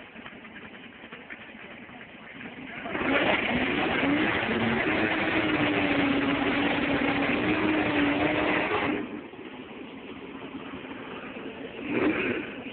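Classic Ford Mustang fastback's engine idling, then revved hard about three seconds in and held at high, steady revs for about six seconds during a burnout, before dropping back to idle near the end. A short rev blip comes at the very end.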